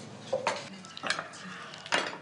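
Kitchen clatter of dishes and utensils: a few separate clinks and knocks, with a sharper one near the end.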